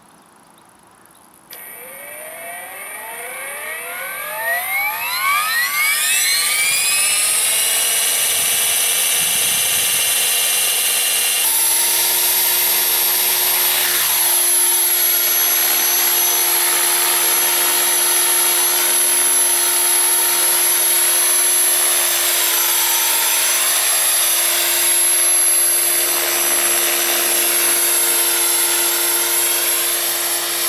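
Align T-Rex 500 E electric RC helicopter: its brushless motor and rotors spin up with a whine rising in pitch over about five seconds, then run at a steady high-pitched whine at flight speed.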